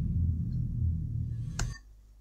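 Deep rumbling cinematic sound effect from a music video's animated logo end card. It ends with one sharp hit about one and a half seconds in, then cuts off suddenly, leaving faint room tone.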